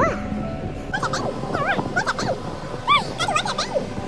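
A toddler's short, high-pitched squeals and vocal sounds, each rising and falling in pitch, over background music.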